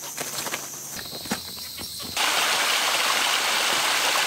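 Rustling and small knocks of gear being handled and packed into a bag, then, about two seconds in, an abrupt switch to the steady rush of a shallow stream running over rocks.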